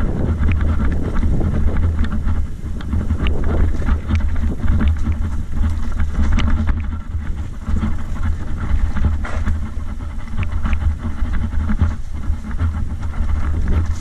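Mountain bike descending a rocky dirt trail: steady low wind rumble on the microphone, with constant rattle and clatter as the tyres roll over loose stones and bumps.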